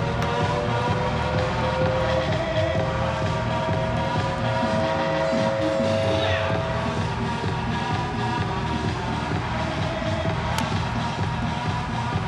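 Music playing over a steady noisy background, with long held notes through roughly the first half.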